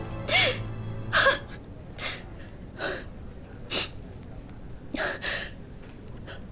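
A woman sobbing with sharp, gasping breaths about once a second, after soft background music that stops about a second in.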